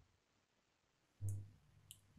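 Near silence for about a second, then a brief low thump and, just before the end, a short sharp click.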